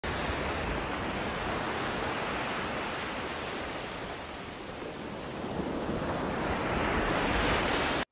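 Ocean surf sound bed: a continuous wash of waves that eases a little around the middle, builds again, then cuts off suddenly at the end.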